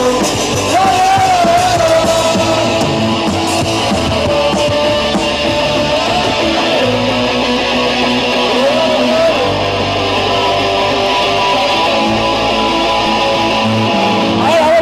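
Punk rock band playing live: electric guitars with a sung vocal line holding long notes that bend in pitch.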